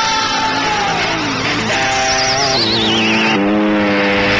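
Cartoon intro theme music with sound effects: sustained tones stepping between pitches, and a falling, warbling whistle-like glide about two seconds in.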